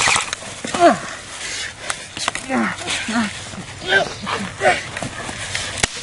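A person's short wordless cries and grunts, about half a dozen, each falling in pitch, as people wrestle on the ground. Under them, rustling of brush and grass with a few sharp knocks.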